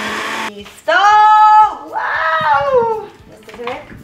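Countertop blender running on a banana smoothie, switched off and stopping abruptly about half a second in. A woman's voice follows: a long note held at an even pitch, then a shorter sliding sound.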